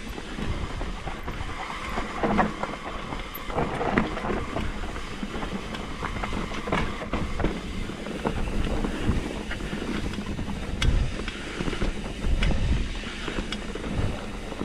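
Mountain bike riding down a dirt singletrack: tyres on dirt with frequent rattles and knocks from the bike over bumps, and a low wind rumble on the microphone.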